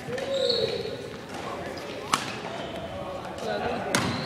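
Badminton racket strikes on a shuttlecock during a rally: two sharp hits, one about two seconds in and one near the end.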